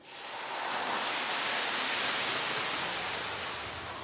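A turkey-fryer fire erupting all at once: a sudden rush of flame that swells over the first second or so and then slowly eases. It is the flare-up of overheated oil meeting a partially frozen turkey.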